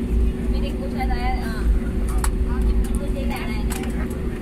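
Cabin noise of a jet airliner taxiing: a steady low rumble with a constant engine hum, a few sharp clicks and knocks, and passengers' voices talking in the background.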